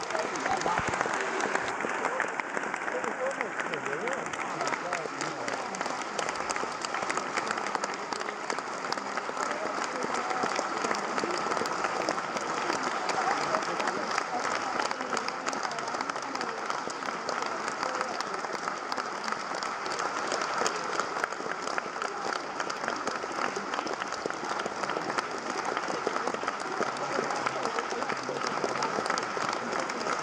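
Theatre audience applauding steadily, many hands clapping without a break, with some voices mixed in among the clapping.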